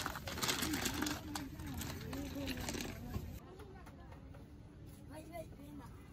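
Glass nail-polish bottles clinking and rattling as a hand rummages through a heap of them, with people talking in the background; the clinking stops about three seconds in.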